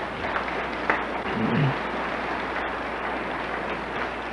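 Congregation applauding: a steady patter of many hands clapping.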